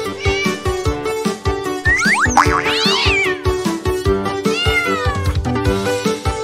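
Upbeat children's music with a steady beat, with a cartoon cat meowing over it twice: once about two seconds in and again near the end.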